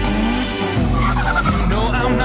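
Mitsubishi Lancer Evolution driving past with a squeal of tyres over a music track; the squeal comes in as wavering, gliding tones about halfway through.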